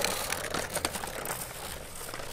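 Riderless electric penny board driven by remote, its small wheels rolling fast over rough asphalt: a steady crackly rolling noise with a few faint ticks and no clear motor whine.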